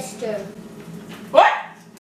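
A person's voice at close range: a short voiced sound at the start, then about one and a half seconds in a brief, loud vocal sound sharply rising in pitch, after which all sound cuts off suddenly.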